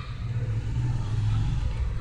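A low, steady rumble with no speech.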